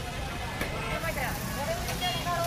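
People talking in the background over a steady low rumble of street noise, with a few faint clicks of a metal spatula on the iron tawa.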